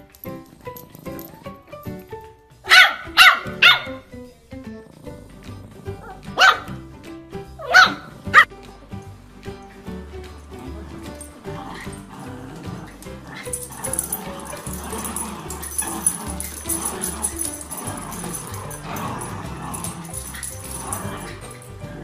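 A small dog, a Yorkshire terrier puppy, barking in two bursts of three short, sharp barks about three and seven seconds in, over background music.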